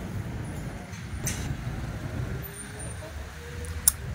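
City street traffic: the engines of buses and jeepneys running, a steady low rumble, with faint voices of passers-by.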